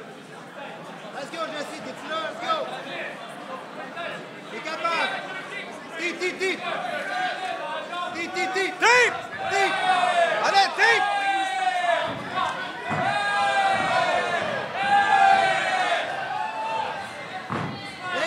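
Overlapping shouts from fight spectators and cornermen in a hall, getting louder and busier about halfway through, with occasional short thuds.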